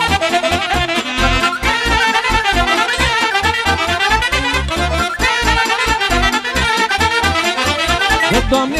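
Romanian folk band playing an instrumental interlude: saxophones, clarinet and accordion carry the melody over a steady keyboard bass beat.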